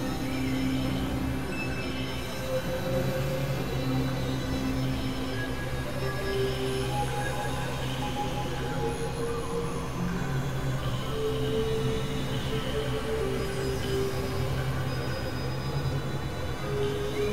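Experimental electronic drone music from synthesizers, a Novation Supernova II and a Korg microKORG XL: a steady low drone under a dense, noisy texture, with short held tones coming in and out at shifting pitches.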